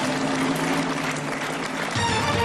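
Studio audience applauding a correct answer, with a sustained music chord held underneath. The sound changes to new music right at the end.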